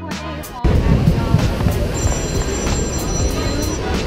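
Background music cuts off abruptly about half a second in, giving way to a loud, steady rushing of churning rapids water and wind buffeting the camera microphone aboard a river rapids raft ride.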